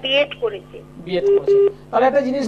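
A voice over a telephone line on a live call-in broadcast, sounding thin and narrow, followed about a second and a half in by two short steady electronic beeps on the line.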